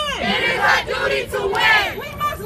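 A crowd of protesters shouting a chant together, many voices overlapping.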